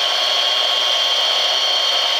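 Home-built CNC mini lathe spindle running steadily at about 722 rpm: a constant high whine over an even hiss.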